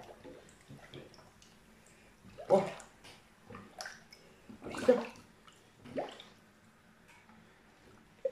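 Hands moving in a large pot of salt brine, pressing a whole duck under: faint sloshing and dripping water, with a couple of short spoken words.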